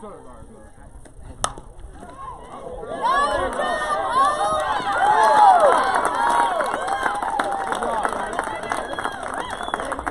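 A softball bat strikes the ball with a single sharp crack about one and a half seconds in: a base hit. About a second and a half later, many voices of fans and players start yelling and cheering and keep going.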